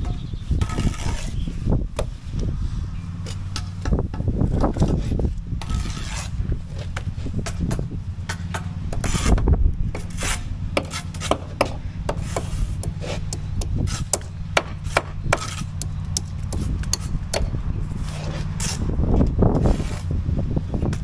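Steel trowels scraping and tapping mortar and concrete blocks: irregular scrapes and sharp clicks throughout, over a steady low machine hum.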